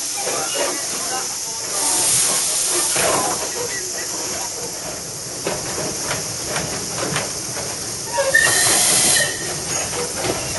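Steam train running, heard from a passenger carriage: a steady hiss, with two louder surges of steam, about two seconds in and again near the end, and scattered knocks from the moving train.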